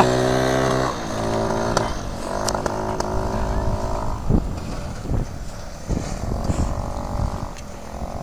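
A small motor vehicle's engine running at a steady pitch, dropping away after about four seconds. It gives way to regular taps and scrapes, about one every 0.7 s, of an ice-chair sled's metal poles pushing against the river ice.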